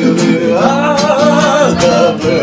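Acoustic guitar strummed, with a voice singing a short wavering phrase over it from about half a second in.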